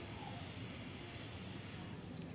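Faint, steady hiss of water misting from a hand-held garden sprayer's nozzle onto wet soil in a clay pot.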